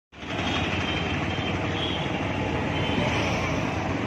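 Steady vehicle and road noise from riding along a road, with wind rushing over the microphone.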